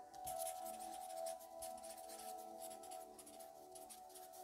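A pen scratching across paper in quick, short strokes while a line of handwriting is written. Soft ambient music with sustained, bell-like tones plays underneath.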